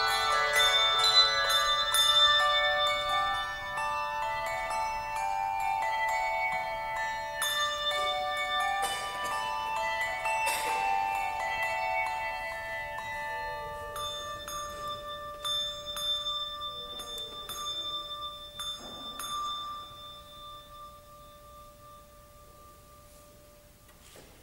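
Handbell choir playing: chords of ringing brass handbells that overlap and sustain, thinning to a few long notes in the second half and dying away near the end.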